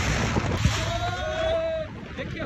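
Wind rushing over the microphone of a moving motorcycle, a steady rush over a gusty low rumble. About a third of the way in, a pitched tone is held for about a second.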